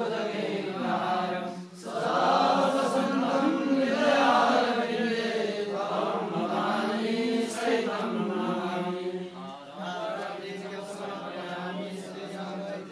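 Voices chanting Vedic Sanskrit mantras in a steady, continuous recitation with slowly rising and falling pitch, dipping briefly about two seconds in.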